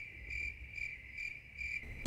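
Cricket chirping sound effect for the awkward-silence gag: a single high trill that pulses about twice a second.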